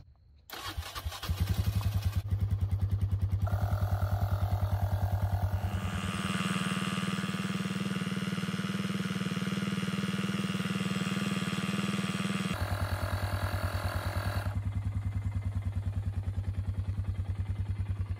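Polaris Sportsman ATV engine starting about a second in and then idling with a steady, even pulse. Over it, the AstroAI cordless tire inflator's compressor runs for several seconds in the middle, pumping the ATV tire up from 3 toward 5 PSI, then shuts off and leaves the engine idling.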